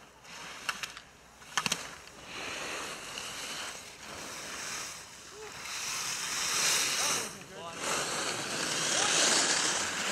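Alpine skis carving and scraping on groomed snow as a racer turns through giant slalom gates: a hissing swoosh that grows louder as the skier comes closer, with surges at each turn. A few sharp clicks come in the first two seconds.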